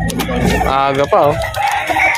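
A rooster crowing about a second in, the call ending in a falling glide, among other fowl and voices.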